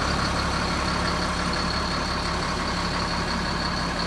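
Ford F650 dump truck's engine running steadily while its hydraulic hoist raises the dump bed, with a steady high whine alongside the engine hum.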